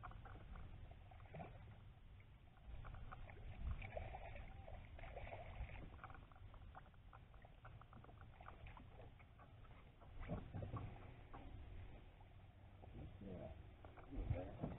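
Faint low rumble of wind on the microphone, with scattered small clicks and knocks from fishing tackle and footsteps on a boat deck as a bass is reeled in and landed. There are a few louder bumps about four seconds in and again around ten seconds.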